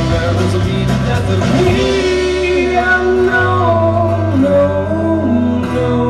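A live rock band playing a song, with electric bass holding long low notes that change every second or so under guitar and sung vocal lines.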